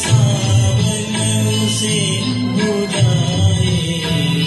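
A man singing a Hindi film song into a handheld microphone over a karaoke backing track, in long held, bending notes.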